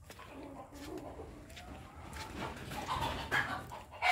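Faint mixed animal and bird calls, growing louder towards the end.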